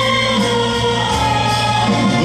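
Live concert music: a band playing with voices singing long held notes.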